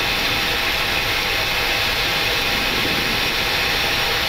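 Steady flight-deck noise of a Boeing 737-800 on final approach: an even hiss of airflow mixed with engine sound, unchanging throughout.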